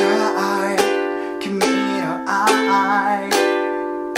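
Small ukulele strummed in chords, a new strum every second or less, moving through a C–G7–Am–G7 progression, with a man singing the melody over it.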